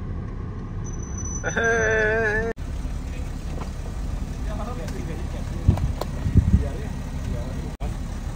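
Low steady rumble of a car, heard from inside it with a rear door open, with a drawn-out voice call about two seconds in and a few dull thumps around six seconds.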